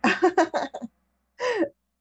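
A woman's voice reacting in surprise without clear words: a quick run of short vocal sounds in the first second, then one falling 'oh'-like sound about a second and a half in.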